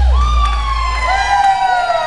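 The last low bass note of a live rock band rings out and fades about a second in. Over it, audience members cheer with long, slowly falling "woo" calls.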